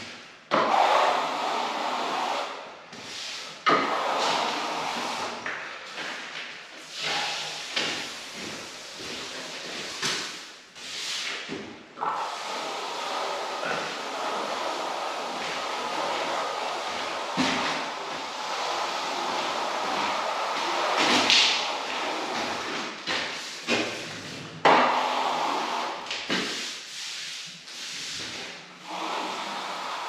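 A 13-inch carbon-steel plastering trowel scraping across a touch-dry skim coat wetted with water, in long strokes of a few seconds each with short breaks between. This is the wet-trowel pass that closes up the plaster surface.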